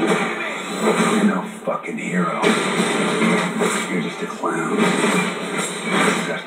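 Movie trailer soundtrack playing from a television's speakers: music with speech over it, thin and without bass, with an abrupt change about two and a half seconds in.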